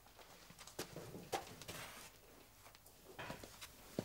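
A few faint, irregularly spaced footsteps and light taps on a hard floor, with a brief soft rustle.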